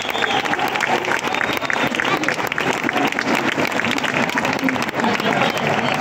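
Audience applauding: many hands clapping in a dense, steady patter that holds at one level throughout.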